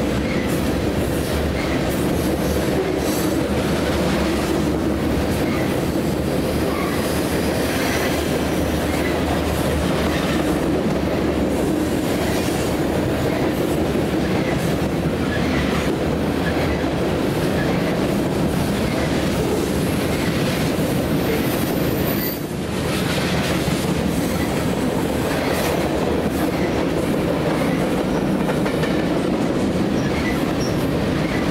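A long mixed freight train's cars rolling past steadily, a continuous low rumble with the wheels clicking irregularly over the rails. The sound dips briefly about three-quarters of the way through.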